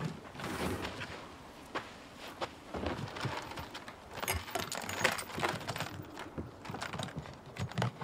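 A light metal chain clinking and rattling against a plastic bin lid as it is unclipped, among irregular clicks, knocks and footsteps on dry ground.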